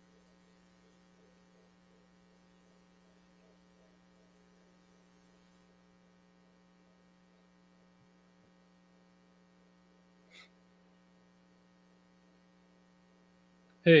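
Faint, steady electrical hum made of several level tones, with a short soft sound about ten seconds in. A man's voice starts right at the end.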